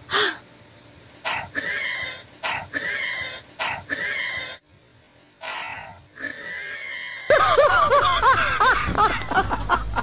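A series of about six hard puffs of breath blown into a folded paper held at the mouth, each under a second long with short gaps between. From about seven seconds in, loud laughter takes over, with a low rumble of the phone being handled.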